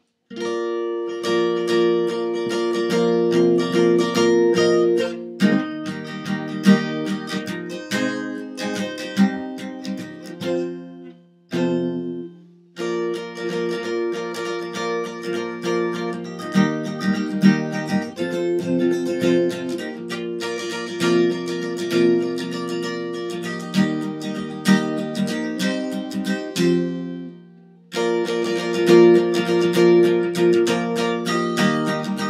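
Acoustic guitar strummed in a steady rhythm of chords, the playing stopping briefly twice, about twelve seconds in and near the end, before picking up again.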